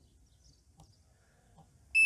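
Near silence, then near the end a short high electronic beep from the drone's remote controller as Return to Home is triggered.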